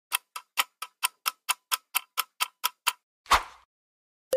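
Countdown-timer ticking sound effect, about four to five clock ticks a second for roughly three seconds. It ends with a single louder hit near the end, marking time up.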